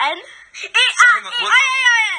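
A young child giggling and laughing in high-pitched bursts, heard from a home recording played back on air.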